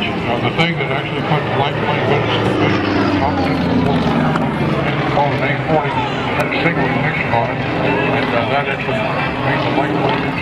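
Propeller biplane's piston engine running through an aerobatic manoeuvre, its note falling between about two and four seconds in, under voices.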